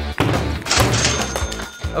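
A mesh bag of sidewalk chalk slammed down on a wooden tabletop, making thuds, over background music.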